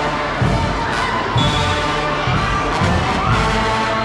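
Brass marching band playing with a steady bass-drum beat about twice a second, with a crowd cheering and shouting over it.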